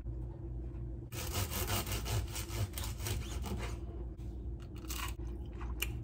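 Crust of a freshly baked loaf of rice bread crackling and scraping as it is handled and broken into. There is a quick run of scrapes starting about a second in and lasting a couple of seconds, then a few light clicks near the end, over a steady low room hum.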